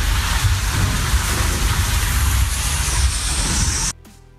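Water rushing and splashing over a phone's microphone at the water's surface: a loud, steady rushing noise with a deep rumble, which cuts off suddenly near the end.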